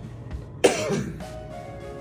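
A man's single loud cough a little over half a second in, over background music with steady held tones.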